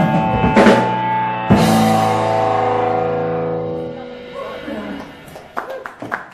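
Live rock band of drums, electric guitar and bass ending a song: a last full-band chord is struck about a second and a half in and rings out, fading over the next couple of seconds. Scattered clapping from a small audience starts near the end.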